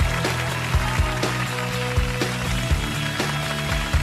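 Studio audience applauding over upbeat show music with drum hits, starting suddenly on the reveal after a three-count.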